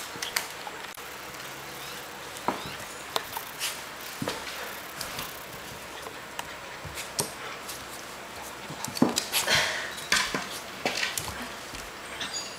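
A Shiba Inu puppy and a cat scuffling on a tile floor: scattered short knocks, scrapes and clicks of paws and bodies, with a denser flurry of scuffling about nine seconds in.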